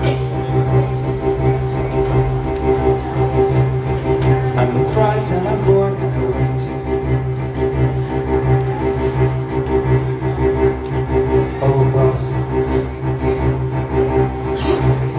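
Live band music: an instrumental passage of a pop song with a steady, sustained low drone and held chords under it.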